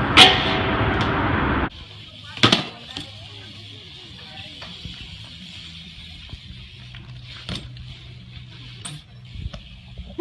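BMX bike tricks on concrete and metal: a loud clatter as the bike hits a rail over heavy noise, then, after a sudden cut to a quieter clip, a few scattered sharp knocks of the bike on the ground.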